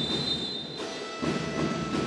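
Broadcast transition sting: a steady, high synthesized tone, then from about 0.8 s a held chord of several high tones, leading into a replay logo wipe.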